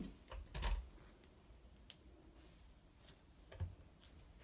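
Quiet bare footsteps and a few light clicks of camera handling, with a soft low thump near the end as a foot steps onto a digital bathroom scale.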